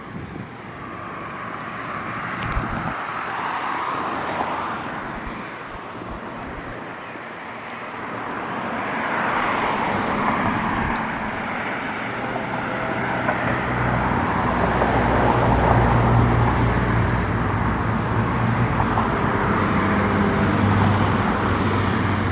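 Road traffic on a nearby street: cars pass, their noise swelling and fading. From about halfway through, a steady low engine hum builds and holds.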